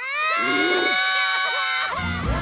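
A cartoon child's voice letting out one long, high-pitched held cry that starts abruptly, with a second, lower voice briefly sounding under it near the start.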